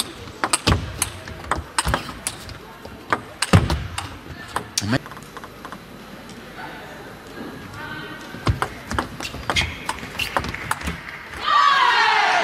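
Table tennis ball clicking sharply off rackets and the table in quick, irregular rally exchanges, followed near the end by a loud shout.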